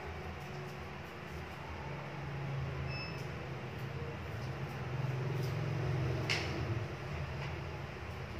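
A low, uneven background rumble, growing a little louder past the middle, with a few faint ticks and one sharp click a little after six seconds in.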